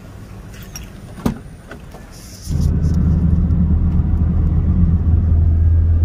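Quiet ambience with a single knock, then, about two and a half seconds in, a loud steady low rumble of a car running, heard from inside the cabin.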